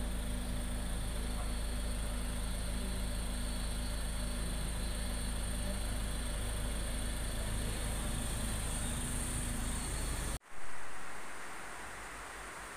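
Mini Cooper S's turbocharged four-cylinder engine idling steadily, a low, even hum. The sound cuts off suddenly about ten seconds in and gives way to a short burst of hiss that fades.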